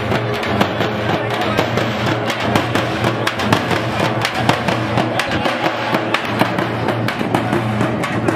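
A group of hand-held frame drums beaten with sticks in a fast, dense rhythm.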